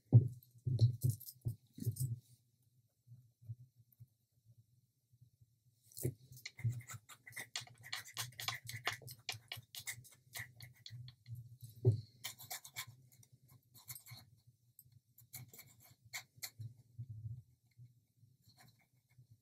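Faint handling sounds of a pointed wooden stick working wet epoxy resin on small wooden pieces: a few soft knocks at first, then from about six seconds in a busy run of small clicks, taps and scrapes, over a faint low hum.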